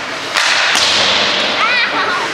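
Ice hockey play: a sharp crack about a third of a second in and another shortly after, typical of sticks striking the puck, over the scraping hiss of skates on the ice. A brief call is heard near the end.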